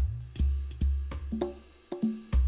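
Band music opening on a drum kit: several hard kick-drum hits with a deep, sustained low end and cymbal crashes above them, starting suddenly.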